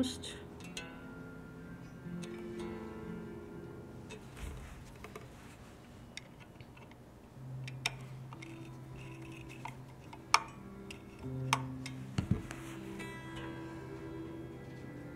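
Electric guitar's low strings plucked one at a time and left to ring while they are tuned to pitch and checked for intonation, with sharp clicks from a screwdriver working the bridge saddle screws.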